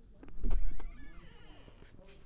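Dry-erase marker squeaking in short glides across a whiteboard as a line is finished. A loud dull thump comes about half a second in and is the loudest sound.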